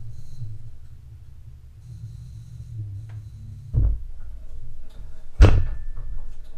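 Daytona 3-ton low-profile hydraulic floor jack being let down, its lift arm and saddle lowering over a low hum, with two clunks, the louder one near the end.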